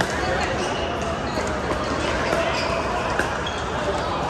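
Pickleball paddles hitting a plastic pickleball during a rally, a few sharp pops heard in a large indoor hall over a steady murmur of voices from the surrounding courts.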